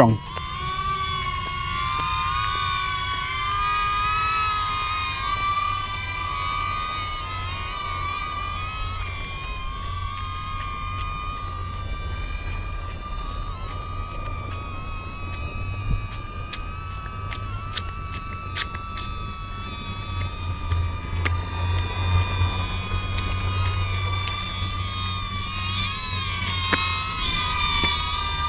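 DJI Neo mini drone's propellers whining in flight, a steady high-pitched hum with several overtones that waver up and down as the motors adjust while it follows a person. A low rumble sits underneath.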